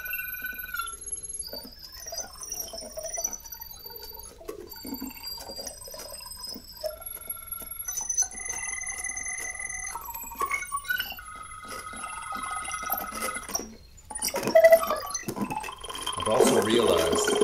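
Electronic synthesizer tones played live through wearable hand controllers and a mouthpiece: a changing sequence of high, held beeps at different pitches, each lasting about a second, over soft clicks. A louder burst comes near the end.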